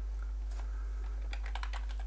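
Computer keyboard typing: a run of light, quick keystrokes starting about half a second in, over a steady low hum.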